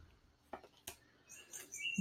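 Faint soft clicks and rustle of tarot cards being handled as a card is drawn from the deck, then a thin, steady high note starting near the end.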